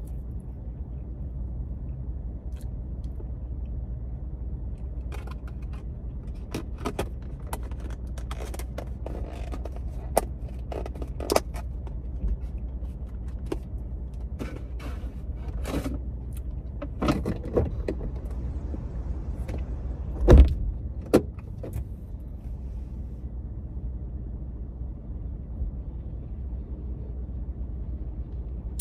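Scattered short crunches and clicks as fresh coconut chunks are chewed and a plastic cup is handled, over a steady low rumble inside a car cabin. A single louder thump comes about twenty seconds in.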